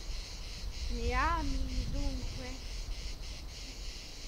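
A woman's voice speaking one short question, its pitch rising and then falling, from about a second in. Behind it is steady outdoor location sound: a high hiss and a low rumble.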